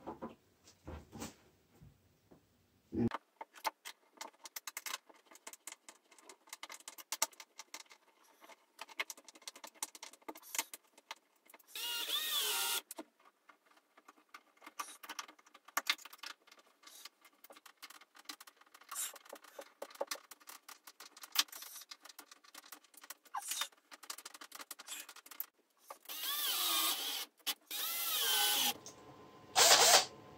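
Concealed cup hinges being fitted to a chipboard cabinet door: scattered light clicks and taps of the metal hinge parts and a hand screwdriver, with two short bursts of a cordless drill driving screws, one about twelve seconds in and a longer one near the end.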